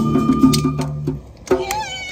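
Live band music ends on a held chord about a second in; after a brief drop, people start whooping and cheering with high sliding yells.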